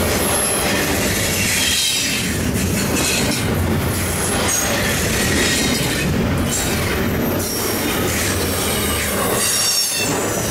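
Double-stack intermodal container train rolling past close by: a steady rumble and clatter of steel wheels on the rails, with brief high-pitched wheel squeals several times.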